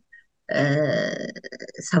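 A woman's voice holds one drawn-out vocal sound for about a second after a brief pause. It trails off breathily before ordinary speech resumes near the end, heard over a video-call link.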